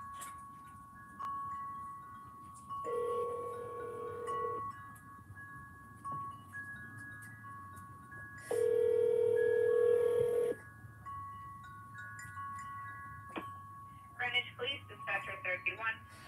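Telephone ringback tone over a phone line: two rings, each about two seconds long and about six seconds apart, the cadence of a North American ringback, while the call waits to be answered. Faint chiming music plays underneath, and a voice comes on the line near the end.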